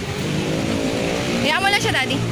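A vehicle engine running steadily on the street, a low droning hum. Near the end a short, high, wavering voice cries out over it.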